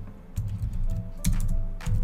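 Computer keyboard being typed on: a few separate keystroke clicks, over a steady low background.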